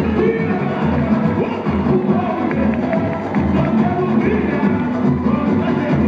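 Samba school music: a samba-enredo sung by voices over the bateria's drums, with the deep surdo bass drums beating steadily about twice a second.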